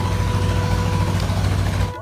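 Steady low hum of a motor-vehicle engine with an even hiss of road noise over it, ending suddenly just before the end.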